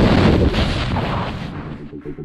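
Loud rush of wind and aircraft propeller noise on the camera microphone as a tandem pair leaves the open door of a jump plane, dropping about halfway through and fading away near the end.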